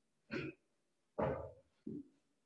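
Short, breathy bursts of a person's exhalation and body movement, three in two seconds, from rocking back and forth on the back with the knees hugged to the chest.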